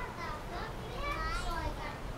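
Faint, high-pitched children's voices calling and chattering at play, with a couple of rising and falling calls.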